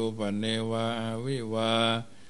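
A Thai Buddhist monk chanting Pali verses in a steady, near-monotone recitation, holding each long syllable at almost one pitch.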